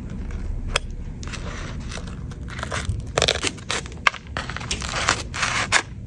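Shattered iPad touchscreen glass crackling and crunching as it is scraped and pried off the metal frame with a hand tool. It comes in irregular bursts with sharp clicks, loudest about three seconds in and again near the end.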